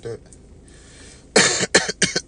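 A man coughing, three quick loud coughs about a second and a half in, into his fist.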